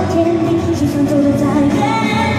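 A woman singing a Mandarin pop song live into a handheld microphone over a backing track, heard through the PA.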